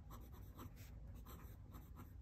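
Broad nib of a Sailor King of Pens fountain pen writing on journal paper: a run of faint short strokes.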